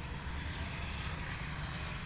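Steady outdoor background noise: a low rumble with a faint even hiss and no distinct event.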